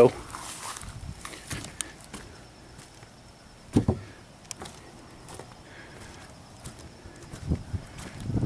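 Footsteps and scattered knocks on wooden dock boards, with one louder thump a little before the middle, over a quiet outdoor background.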